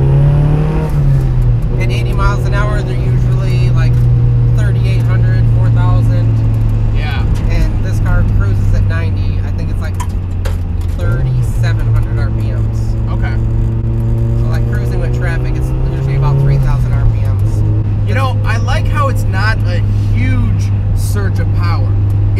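Turbocharged 1.8-litre Mazda BP inline-four of an NA Miata heard from inside the cabin while driving, holding a steady engine note. Twice, near the start and about three quarters of the way through, the pitch climbs briefly and then falls back, and there is a short wobble around the middle.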